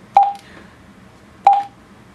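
Two short key beeps from a Juentai JT-6188 dual-band mobile radio as its buttons are pressed to change the power setting. Each beep is a brief single tone with a click at its start, a little over a second apart.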